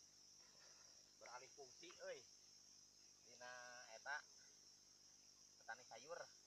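Faint, steady high-pitched insect chorus, with a few short snatches of quiet voices.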